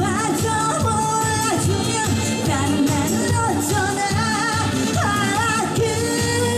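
A woman singing a Korean trot song into a microphone over amplified accompaniment with a steady beat, holding notes with a wide vibrato.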